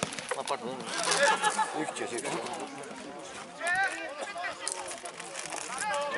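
Distant men's voices shouting and calling across a football pitch: short calls about a second in and again near four seconds, over faint open-air background noise.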